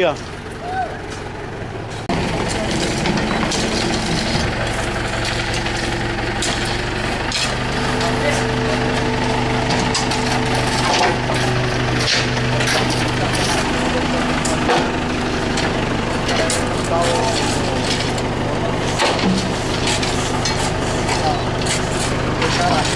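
Tractor engine running steadily at road-repair works, with scattered knocks and clatter from the work going on around it.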